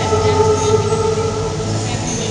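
A woman singing long held notes into a microphone, accompanied by violin.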